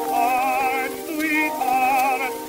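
Acoustic-era 1917 Columbia 78 rpm recording of a tenor ballad with orchestra playing back: held notes with vibrato, over faint record-surface hiss.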